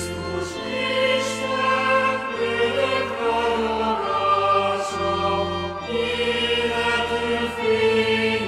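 Choir singing a slow Christmas song in sustained chords, over a bass line that moves to a new note every second or so.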